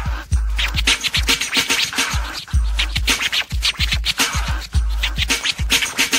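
Instrumental hip hop break: turntable scratching over a drum beat, with long, booming low bass hits recurring every second or so.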